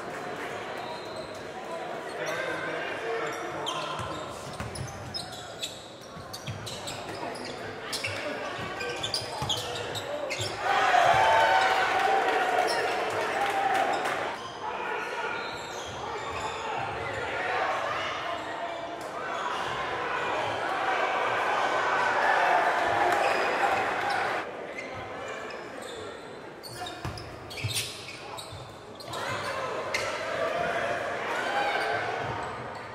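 Live sound of a basketball game in a gym: a ball bouncing on the hardwood court with sharp knocks scattered throughout, under players' and spectators' voices calling out. The voices grow louder about a third of the way in and again past the middle.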